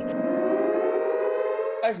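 Air-raid siren winding up, its pitch rising steadily under a held tone, cut off as a woman starts speaking near the end.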